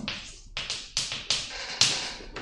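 Chalk writing on a blackboard: a quick run of short chalk strokes and taps, about six in two seconds.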